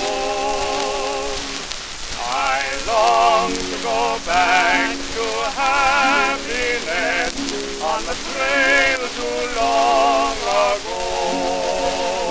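A 1922 acoustic-era Edison Diamond Disc of a male duet with orchestra playing: a sustained chord for the first second or so, then a melody of short notes with vibrato. The disc's surface hiss and crackle run steadily beneath it.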